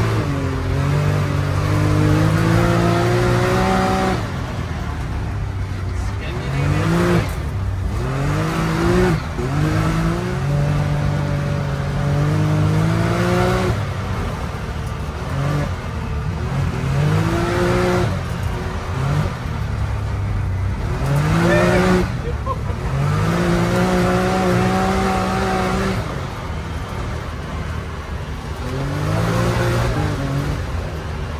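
Can-Am Maverick side-by-side's Rotax engine, heard from inside the open cab and driven hard on dirt. Its pitch climbs again and again under full throttle and falls back each time the throttle comes off, over steady drivetrain and road rumble.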